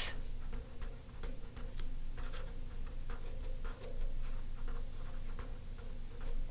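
Marker pen writing a short phrase on paper: a run of short, irregular scratchy strokes, over a faint steady low hum.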